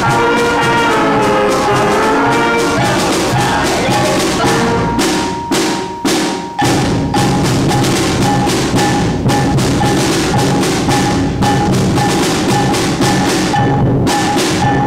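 School pep band of brass, woodwinds and percussion playing: the winds carry a melody for the first few seconds, then after a short break about six seconds in, drums and percussion keep a steady beat under a held wind note.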